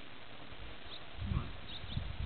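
Irregular low rumbling gusts, starting a little after a second in, typical of wind buffeting a camcorder microphone outdoors. A few faint bird chirps sound above it.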